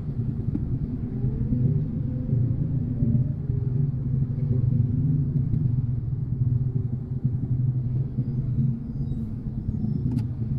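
Low, steady rumble of engines in slow, crawling traffic, heard from inside a car's cabin, with motor scooters running close alongside.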